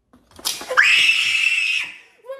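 A person's startled scream: a sharp upward slide into one loud, high, held scream lasting about a second, set off as a live blue crab poked with kitchen tongs raises its claws.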